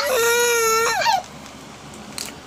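A three-month-old baby's single long wailing cry that breaks off about a second in. He is fussing because he wants to suck on his hand.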